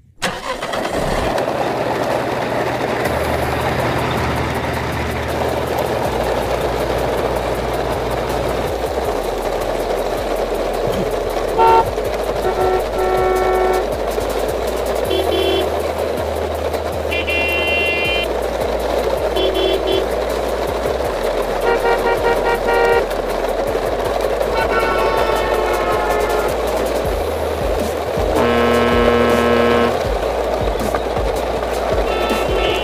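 A train of plastic toy dump trucks rolls over gravel with a steady rumbling hiss. Vehicle horn toots sound in short bursts several times from about twelve seconds in.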